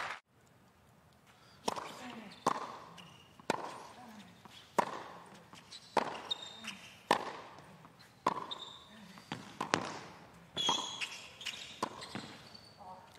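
Tennis rally on a hard court: sharp racket-on-ball hits and ball bounces about once a second, with shoe squeaks between some of them.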